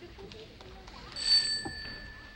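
A bell struck once about a second in, its bright ring loudest at first and then dying away slowly, over a faint arena murmur.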